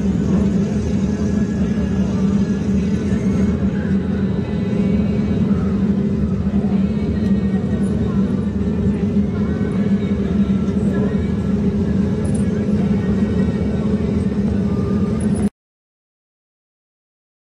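Wingless sprint car engine running steadily at low revs on a slow lap, a drone held at one pitch; it cuts off abruptly near the end.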